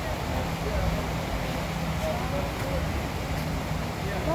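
Floodwater rushing steadily across a road, with a pickup truck's engine running as a low steady hum as the truck drives slowly through the water. Faint voices murmur in the background.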